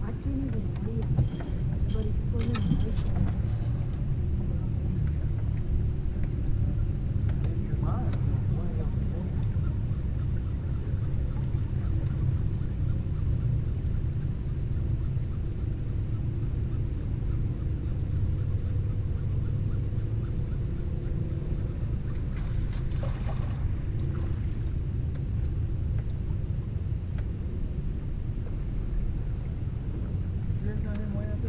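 Steady low rumble of wind on the microphone, with a few brief faint sounds over it.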